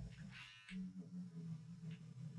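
Faint whir and rubbing of a battery-powered eraser on pastel paper, erasing pencil guide lines, with a short scratchy burst about half a second in.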